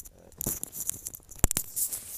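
Footsteps crunching in fresh snow, an irregular crackle of short clicks with one sharp knock about a second and a half in.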